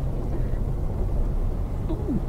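Steady low engine and tyre noise from inside a car driving slowly along a rutted mud road.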